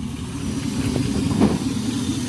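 Chevrolet Silverado's 4.8-litre V8 idling steadily with a low, even rumble.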